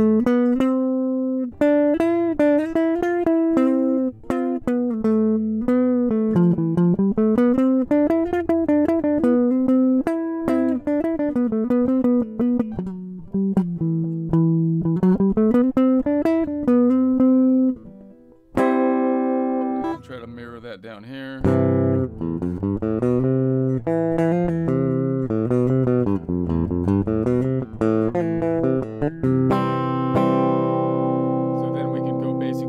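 Electric guitar picking single notes of the C major scale, several a second, running up and down in a small box shape. About eighteen seconds in, the playing changes to strummed chords with fuller, lower notes.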